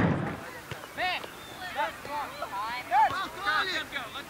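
Distant shouting voices during a youth soccer match: several short calls, about one a second.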